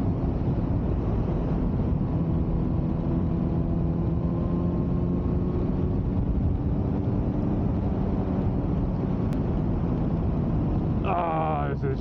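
Suzuki GSX-R 600 K9 inline-four sportbike engine running at a steady cruising note, heard on board under heavy wind noise. A voice breaks in near the end.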